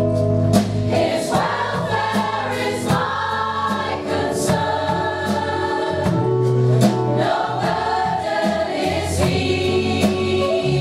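A large mixed-voice choir singing a pop song live in parts, with a steady beat of light, sharp percussive hits underneath.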